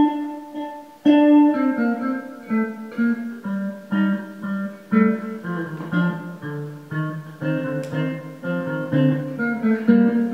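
Electric bass guitar played solo, melodically in a fairly high register. A chord rings out at the start and is struck again about a second in, then a steady run of plucked single notes and two-note stops follows.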